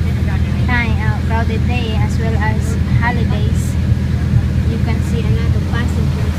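Passenger ferry boat's engine running steadily, a low even drone heard from inside the passenger cabin, with passengers' voices talking over it.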